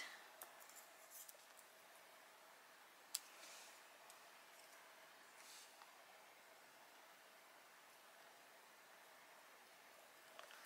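Near silence with faint paper handling: small foam adhesive pads being peeled off their backing and pressed onto a cardstock piece, with one light click about three seconds in.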